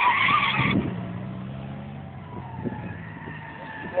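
Drift car sliding through a corner, its tyres skidding loudly for the first moment, then the engine running at a steady pitch with quieter tyre noise.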